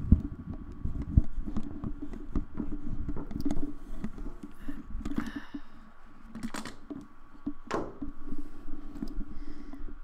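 Things being moved around on a desk: knocks and thumps, the loudest right at the start and about a second in, with rustling handling noise between them and a few sharp clicks in the second half.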